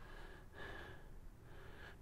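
Near silence: quiet room tone with a faint breath.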